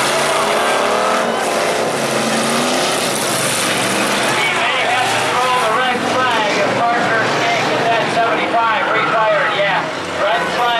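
Race car engines running and revving around a dirt speedway, rising and falling in pitch, with people's voices close by that grow stronger in the second half.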